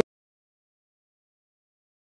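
Silence: the sound cuts off abruptly at the very start and nothing follows.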